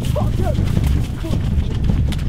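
Running footsteps thudding on grass, with the jostling of a handheld camera, and a few short wordless cries in the first half second.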